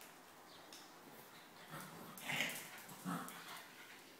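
Puppy and adult spaniel play-wrestling, with three short, high dog cries about two to three seconds in; the middle one is the loudest.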